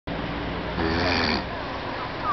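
Steady outdoor noise, with a short, low, rough voice-like sound lasting about half a second around a second in.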